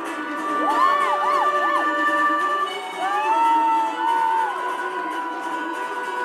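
Live band music played in a concert hall, with an audience cheering and whooping over it. Several arching yells come in the first two seconds and a longer one about three seconds in. The bass is missing, as in a phone recording.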